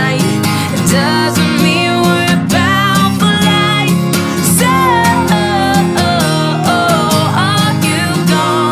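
A steel-string acoustic guitar strummed with a capo on, accompanying a woman singing a melody with bending, held notes: an acoustic pop song.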